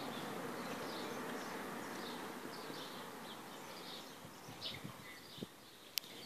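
Wasp wings buzzing close by, fading away over the last few seconds, with faint bird chirps in the background.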